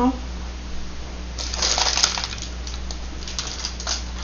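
Clattering and rustling as a parchment-lined loaf pan is lifted off a wire cooling rack and set down on the counter, with a few small clicks after, over a steady low hum.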